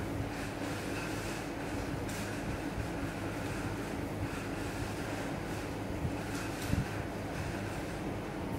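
Steady low hum and hiss of room machinery, with faint scraping of jute twine being wound by hand onto a paper firework shell and a soft knock about seven seconds in.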